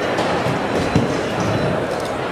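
Rattle and a couple of sharp knocks as a Tesla Model S's hood panel, cut free of its hinges, is lifted off the car and carried away, over a steady noisy crowd-hall background.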